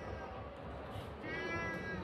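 Tabby cat meowing: a single drawn-out meow starting a little past halfway and lasting under a second.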